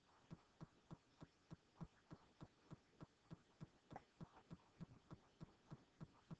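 Near silence with faint, evenly spaced ticks, about three a second.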